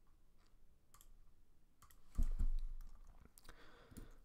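Scattered faint clicks at a computer as the slideshow is advanced. About two seconds in there are a couple of dull thumps, the loudest sounds.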